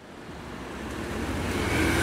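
Street traffic noise: a road vehicle approaching, its rumble growing steadily louder.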